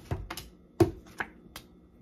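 Tarot cards being handled: about five sharp clicks and slaps as the cards are flicked and set down, the loudest a little under a second in.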